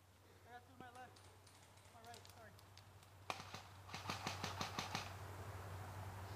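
Airsoft guns firing: a single sharp shot about three seconds in, then a rapid string of about eight shots in roughly a second near the end. Faint distant voices come before the shots.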